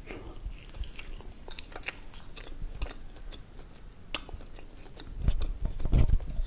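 Close-miked ASMR chewing and biting of a soft white snack: scattered wet clicks and smacks, louder about five seconds in.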